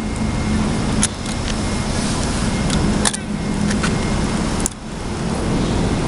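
A motor vehicle running nearby: a steady low engine hum over road noise that dips briefly about two-thirds of the way in. A few light clicks of plastic toys being handled.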